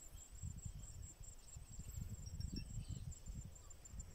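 Insects trilling in a steady, high-pitched, finely pulsed buzz, over a faint irregular low rumble.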